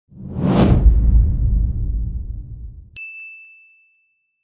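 Logo-reveal sound effect: a loud swelling whoosh over a deep rumble that fades away over about two and a half seconds, then a single bright ding about three seconds in that rings out briefly.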